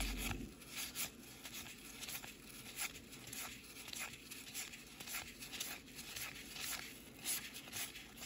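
A stack of cardboard baseball cards being flipped through quickly by gloved hands: faint repeated flicks and rustles of card sliding on card, about one or two a second.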